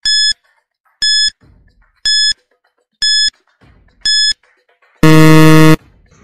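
Quiz countdown timer sound effect: five short, high beeps, one a second, then a louder, longer low buzzer signalling that time is up.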